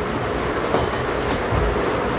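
Large cardboard TV carton being handled and opened: cardboard and polystyrene packing rubbing and scraping, with a dull knock about one and a half seconds in.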